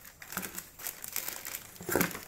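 Plastic packaging crinkling as it is handled, in irregular crackles, with a louder one near the end.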